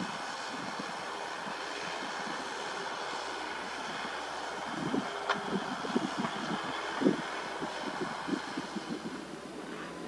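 JCB JS205SC crawler excavator's diesel engine running steadily at a distance. From about five seconds in, a run of low, irregular thumps joins it, the loudest near seven seconds.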